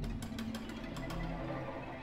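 Orchestra playing contemporary music: low notes held steadily, with a scatter of short, sharp percussive clicks in the first second.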